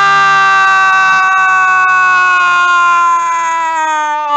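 A football commentator's drawn-out goal call: one long, loud held shout at a steady pitch that sags near the end.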